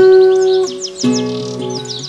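Ashbury tenor guitar played as a fingerpicked instrumental: a note rings out at the start and a new chord is plucked about a second in. A bird sings a quick series of high chirps over it.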